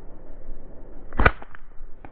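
Slingshot shot: a single sharp snap of the bands released about a second in, followed closely by two fainter clicks.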